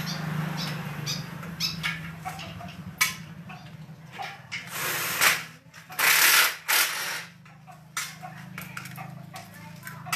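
Metal clicks and clinks of hand tools and a socket ratchet at work on a motorcycle, with three short loud hissing bursts about five to seven seconds in, over a steady low hum.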